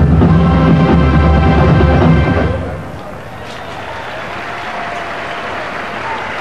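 Marching band brass and drums playing loudly, the music ending about two and a half seconds in. Then a stadium crowd applauding.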